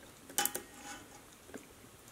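A sharp metallic click about half a second in, then a couple of faint ticks: the 12-volt battery lead being connected to the steel-wool circuit, which makes small sparks at the wire contact.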